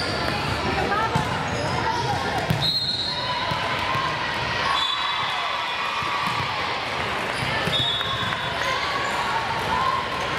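Gym ambience at a volleyball match: indistinct voices of players and spectators echoing through the hall, with a few short squeaks of sneakers on the hardwood court and the thuds of a volleyball bouncing on the floor.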